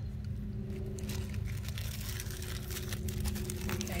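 Scattered soft rustles and small clicks of hands working bulbs into soil, over a steady low hum with a faint rumble.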